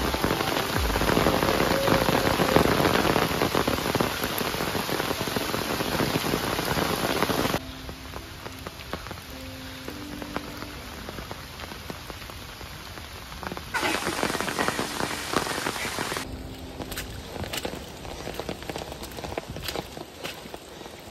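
Steady rain falling through forest, loud for the first seven seconds or so, then dropping and rising abruptly in steps. Near the end, footsteps on a wet, muddy trail with rain behind them.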